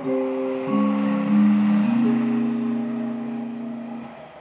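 Intro music: a keyboard playing slow, sustained chords, changing about twice in the first two seconds, then one chord held and fading away near the end.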